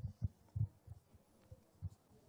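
Faint, irregular low thuds, about six in two seconds, with no speech over them.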